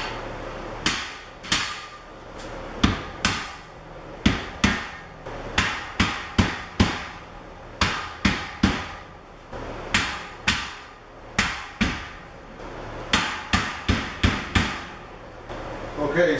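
A rubber mallet striking the steel beams of a boltless storage rack, about thirty sharp blows in uneven runs of a few a second, each ringing briefly. The blows drive the beam ends down into the slots of the uprights.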